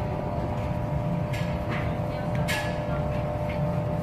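A few light plastic knocks as a white plastic extraction manifold lid is set onto its clear tank, over a steady low hum.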